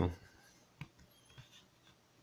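A few faint, short clicks as a pocket digital scale is handled and its power button pressed, switching it on.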